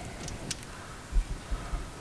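Hands pulling a pushrod length checker back out of an LS2 cylinder head: a light click about half a second in, then a few dull low thumps.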